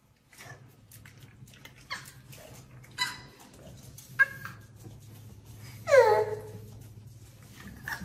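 A dog whining: a few short high whines, the loudest one about six seconds in, falling in pitch.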